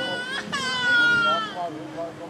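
A high-pitched voice making two long wailing notes, the second the louder, over faint background music.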